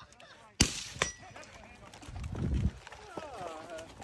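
Two rifle shots from a 12.5-inch AR-15 about half a second apart, the first the louder, the second followed by a brief thin ringing tone. Voices are heard faintly near the end.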